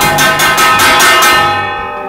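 Steel kitchen utensils being beaten rapidly, a fast metallic clanging with ringing tones, that fades out about a second and a half in.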